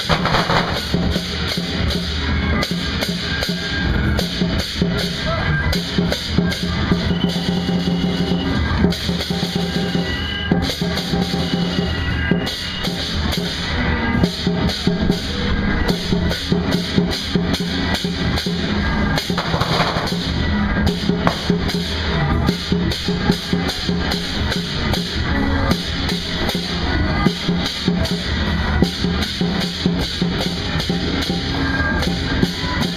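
Loud traditional Chinese festival percussion: drums and cymbals beaten in a dense, fast, unbroken rhythm, the kind of ensemble that accompanies a dragon dance.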